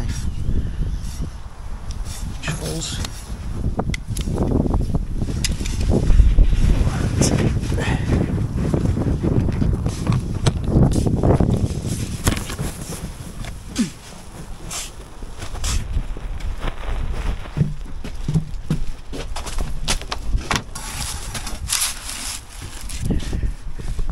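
Rustling, brushing and knocking of mineral wool cavity insulation slabs being handled and carried right against the microphone, loud and irregular with scattered small knocks.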